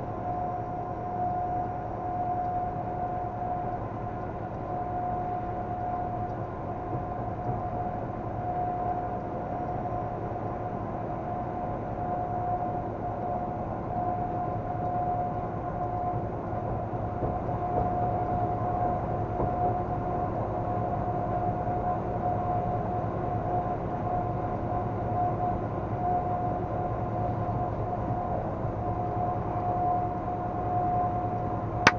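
Steady road and engine noise inside a vehicle's cab at highway speed: a low rumble with a constant high whine over it.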